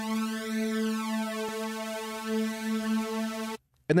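A single held synthesizer note from Arturia Pigments played through its BL-20 flanger, a steady tone rich in overtones with a slow sweep rising and falling through its upper range. It cuts off suddenly near the end.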